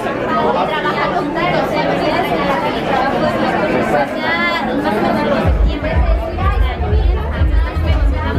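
Several people talking at once over background music, whose heavy bass beat comes in about five and a half seconds in.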